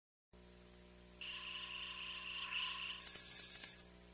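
Electronic intro sounds: a faint steady hum, then bands of hiss that step up in pitch in three stages, the last very high and ending just before the close.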